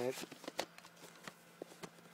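Faint, irregular clicks and taps of plastic VHS cassettes being handled and moved.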